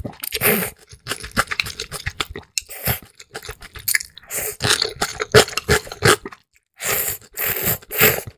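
Close-miked slurping and chewing of ramyeon noodles: several long slurps with wet chewing between them, and a brief pause before a last long slurp near the end.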